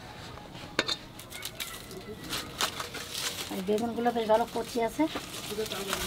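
Light kitchen handling: scattered clinks of metal bowls and rustling as raw fish pieces are handled, with a woman's voice speaking briefly in the background about two-thirds of the way through.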